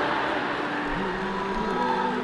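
Murmur of a crowd in a hall, with a few faint steady tones underneath in the second half.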